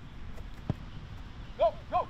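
A single dull thud of a football being struck, about two-thirds of a second in. Near the end a man shouts loudly.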